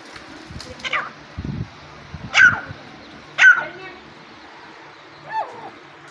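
Irani teetar (partridge) calling among hens and chicks: four short, sharp calls about a second apart, the middle two the loudest, with a low thud about a second and a half in.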